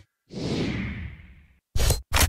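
A whoosh transition sound effect, a hiss that sweeps down in pitch and fades over about a second. It is followed near the end by a loud sharp hit that starts a run of punchy beats.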